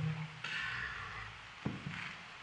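Slowed-down sounds of a puppy squirming on its back on carpet: a low, drawn-out vocal sound tails off in the first half-second, then a scratchy rustle, and a single sharp knock about one and a half seconds in.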